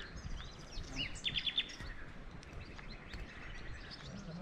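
Small songbirds chirping, with a quick run of about five high notes about a second in, the loudest call, over a steady low background rumble.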